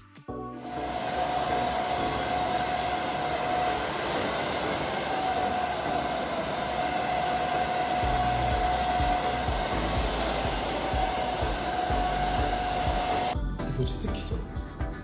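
Hand-held hair dryer blowing steadily with a constant whine, heat-styling hair over a round brush. It starts about half a second in and cuts off shortly before the end.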